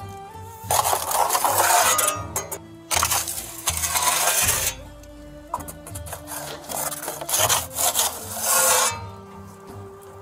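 A flat metal bread peel scraping across the stone floor of a wood-fired oven as pide loaves are slid in, in three scrapes of one to two seconds each.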